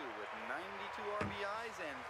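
Baseball play-by-play commentary in a man's voice from a television, with a single sharp knock about a second in.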